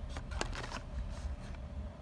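A die-cast car's cardboard-and-plastic blister card handled and turned over in the hands: a few sharp crinkly clicks and rustles in the first second, then quieter handling.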